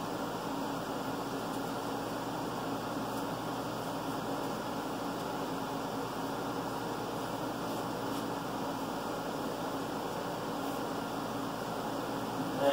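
Steady mechanical hum and hiss of a running machine, with a few faint clicks.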